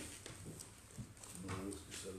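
Brief, indistinct speech from a person's voice, with a couple of faint short clicks between the words.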